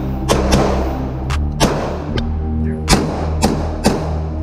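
Background music with a steady bass line, over a Stoeger STR-9 9mm pistol firing several single shots at uneven intervals.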